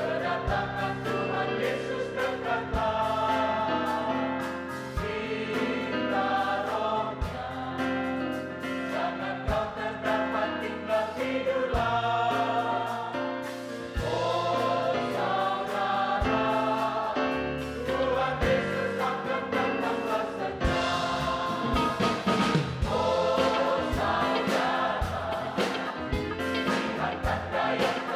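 Mixed choir of men and women singing an Indonesian gospel praise song, accompanied by electric bass guitars, keyboards and drums.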